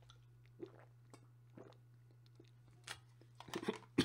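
A person drinking from a plastic bottle: a few faint swallows and mouth sounds spaced about half a second apart, with a small cluster near the end as the drink finishes.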